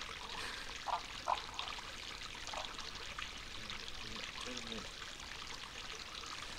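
Spring water trickling and pouring steadily over small rock ledges into a shallow pool. Two brief, louder sounds come about a second in.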